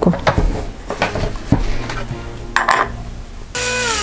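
Small metal parts clinking and knocking as a copy bushing is fitted into a router's clear acrylic base. Then, about three and a half seconds in, a cordless drill-driver starts and whirs loudly, driving a screw into the base, its pitch sagging as the screw takes the load.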